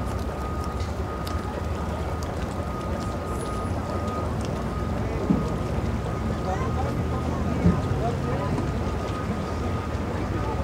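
An engine idling with a steady low rumble and a faint steady whine above it, under faint distant voices and a couple of small knocks.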